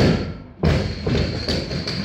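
Loaded barbell with rubber bumper plates dropped from overhead onto the gym floor: a heavy thud, a second thud about half a second later as it bounces, then a few smaller rattles and metallic clinks as the bar settles.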